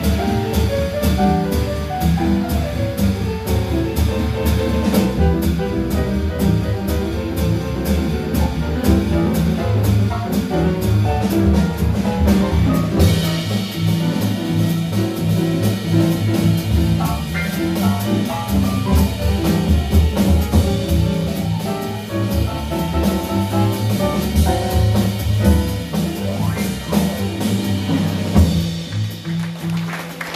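Live jazz piano trio of acoustic grand piano, upright double bass and drum kit with cymbals, playing an instrumental passage with no vocal; the music thins out near the end.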